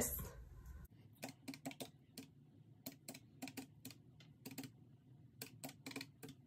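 Keys of a desk calculator being tapped in quick, uneven runs of soft clicks, starting about a second in, as figures are punched in to subtract the totals.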